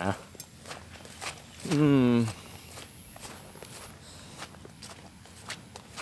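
Footsteps of a person walking through grass, a scatter of soft steps and rustles. About two seconds in, a single short drawn-out voice sound, slightly falling in pitch, stands out above them.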